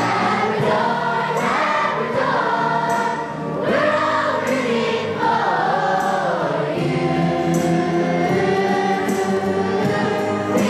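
Children's choir singing together, holding a melody that rises and falls.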